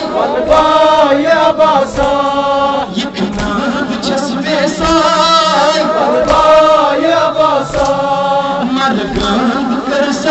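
Kashmiri noha, a Muharram mourning lament, chanted by male voices through a microphone and loudspeaker. The melodic, unaccompanied chant runs on in long wavering phrases.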